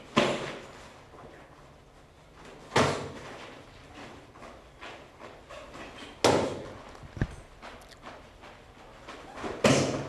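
Taekwondo kicks striking hand-held pads: four loud smacks about three seconds apart, each with a short echo, and a lighter knock between the third and fourth.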